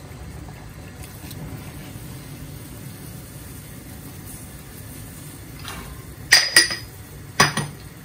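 Saucepan of water at a rolling boil, bubbling steadily, then three sharp clinks of kitchenware near the end.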